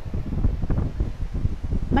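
Low, uneven rumble of noise on the microphone, of the wind-buffeting kind, with no speech over it.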